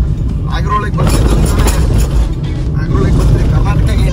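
A car driving, heard from inside its cabin: a steady low rumble of engine and tyres on the road, with people talking over it.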